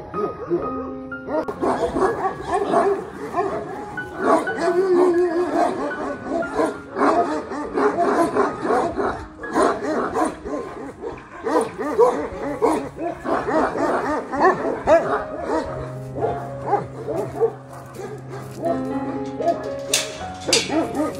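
Dogs barking and yipping over and over, with background music underneath.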